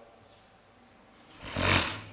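A single breath into a podium microphone about one and a half seconds in, a short noisy rush lasting about half a second. The rest is quiet room tone.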